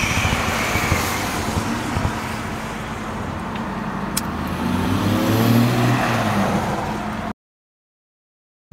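Steady car-cabin background noise with a single sharp click about four seconds in as a lighter is struck. Near the end a vehicle engine note rises and falls, then the sound cuts out abruptly.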